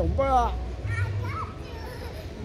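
An adult calling out a child's name in a long sing-song call that ends about half a second in, then a child's short high voice about a second in, over a low rumble.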